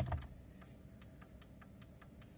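Fiat Panda 2's turn-signal flasher ticking with the right indicator on, an even train of clicks a few times a second and a bit faster than normal: hyper-flashing, because the right rear indicator is not lighting.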